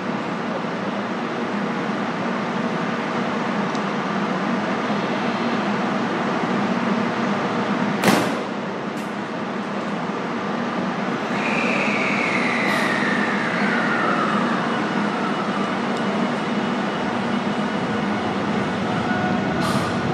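Electric limited express train running at a station platform: a steady rumble of the running gear, a single sharp clack about eight seconds in, and a whine falling in pitch a little after halfway.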